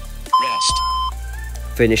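Workout interval timer beep: one long electronic tone, about three-quarters of a second, marking the end of a work interval, over background music.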